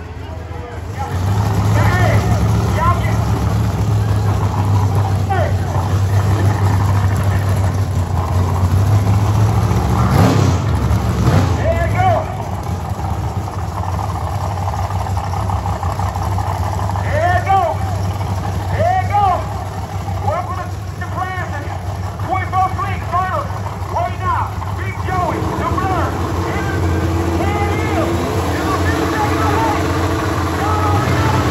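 Big-wheel drag cars' engines running at the start line, a loud steady low drone, with a louder surge about ten seconds in. Crowd voices and shouts rise over it in the second half.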